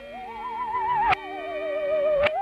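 Musical saw playing a wavering, vibrato-laden melody that leaps up at the start and slides back down about a second in, over held accompaniment notes. The audio runs backwards, so each note swells up and then cuts off abruptly.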